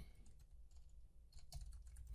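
Faint computer keyboard keystrokes, a few quick clicks in the second half.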